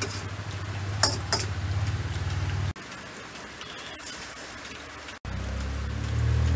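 Metal ladle stirring instant noodles in a wok on a gas stove, scraping and clinking against the pan about a second in, over a steady hiss and a low hum.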